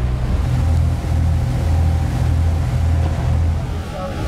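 Motor launch's engine running with a steady low drone, wind and water noise over it. The drone swells about half a second in.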